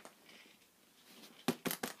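Handling noise from a leather handbag being held up and shifted: a faint stretch, then a quick cluster of about four sharp rustling clicks about one and a half seconds in.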